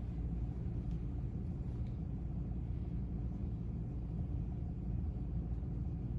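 Steady low background rumble of room noise, even throughout, with no distinct events.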